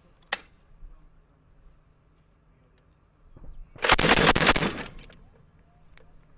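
Mk 19 40 mm belt-fed automatic grenade launcher firing a short burst of rapid reports, about a second long and about four seconds in. A single sharp click comes just after the start.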